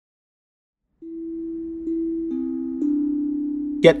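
Background music: soft sustained low tones that begin about a second in and grow louder in a few steps as further notes join, holding steady without dying away.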